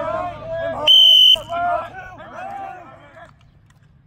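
A coach's whistle blown once, a short, steady, shrill blast of about half a second, about a second in, over players' voices on the field. In this drill the whistle signals the next step, the pass or the dodge.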